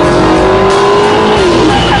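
McLaren MP4-12C supercar's twin-turbo V8 running hard at speed. Its pitch rises slightly, then falls away about a second and a half in.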